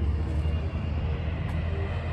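Low, steady rumble of vehicle traffic.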